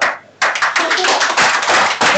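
A single sharp knock of a mallet striking and cracking the baked mud-and-clay crust of a beggar's chicken, then, from about half a second in, a dense burst of clapping mixed with voices.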